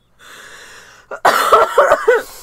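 A woman laughing behind her hand: a breathy, stifled exhale, then loud bursts of laughter starting about a second in.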